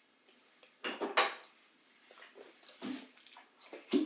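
A teaspoon clinking and scraping a few times while eating from a chocolate egg: two sharp clicks about a second in, then a few fainter ones.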